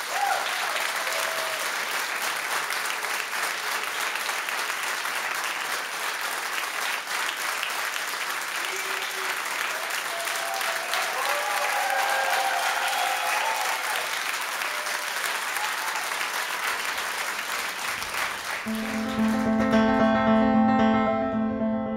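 Audience applauding steadily. Near the end the applause gives way to a grand piano starting to play low, sustained notes.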